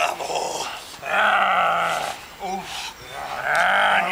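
Belgian Malinois growling while it grips a decoy's bite sleeve: two long growls, the first starting about a second in and the second near the end.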